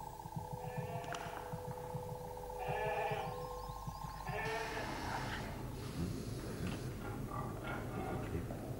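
Sheep bleating over an advert soundtrack of steady electronic tones and a fast, low pulsing.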